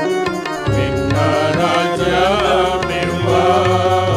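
A group of men singing a Telugu Christian hymn together, with electronic keyboard accompaniment; about two seconds in the voices hold a long, wavering, ornamented note.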